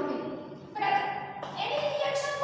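A woman's voice speaking in a lecture, with a short pause about halfway through.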